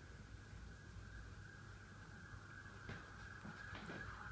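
Near silence: quiet indoor room tone with a faint steady hiss and low hum, and two faint clicks near the end.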